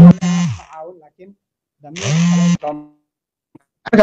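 A man's voice speaking in two short phrases separated by silent pauses.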